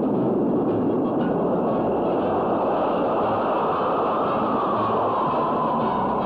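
Jet aircraft, an A-4 Skyhawk, flying in low with a loud, steady rush of jet noise; over the last couple of seconds a whine in the noise falls in pitch as the jet passes.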